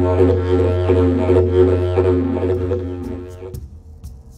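Mago didgeridoo pitched in F being played: a steady low drone with rhythmic, shifting overtone patterns on top. It fades and stops a little over three seconds in.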